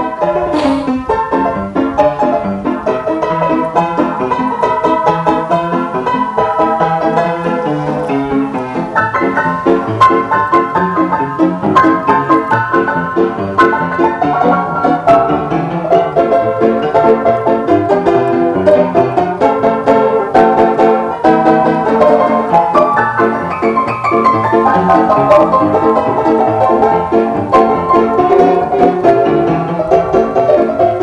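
Upright piano played solo, a lively, steady stream of quick notes and chords with no pauses.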